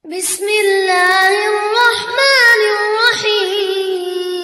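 A child reciting the Quran in melodic murottal style: one long sung phrase, held on a steady pitch with small ornamented turns, beginning abruptly after a silence.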